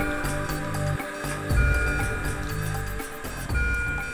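Background music: sustained synthesizer tones over a low bass pulse that repeats about every second and a half.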